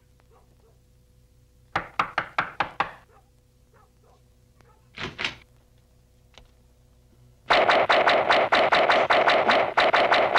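Knocking on a front door: about six quick raps a little under two seconds in. Near the end a much louder, fast run of repeated hits, about seven a second, starts and keeps going.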